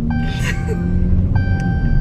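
Music with long held notes over the steady low rumble of a car. A short breathy burst comes about half a second in.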